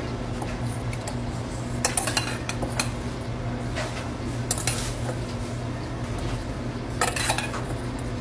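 A metal spoon clinking and scraping against a stainless steel pan of cooked rice, in a few short bursts, over a steady low hum.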